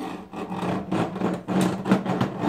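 Plastic toy hand saw rasping back and forth across a plastic toy workbench, about two strokes a second.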